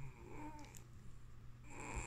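Squeaker in a plush dog toy being squeezed: a short squeak that bends in pitch about half a second in, then a longer, harsher squeak near the end.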